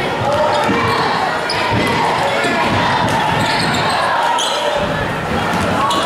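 Basketball being dribbled on a gym's hardwood court during a game, with the voices of spectators and players, echoing in the large hall.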